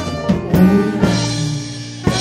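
Live swing big band playing, with trumpet and drum kit: a struck accent at the start, then held notes through the middle, and another sharp hit at the end.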